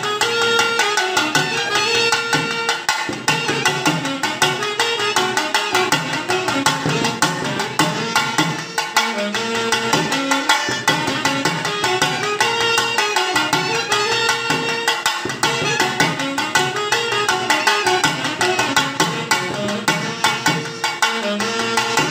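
Saxophone playing a South Indian temple melody, accompanied by a hand-held harmonium and steady hand-drum beats, for a ritual instrumental round of the temple.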